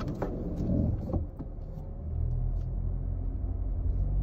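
Car engine and road rumble heard from inside the cabin as the car moves off, the low rumble growing louder about halfway through.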